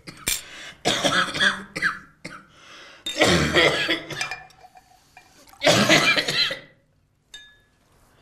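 A man coughing hard in several fits, about four bursts, as though something has caught in his throat.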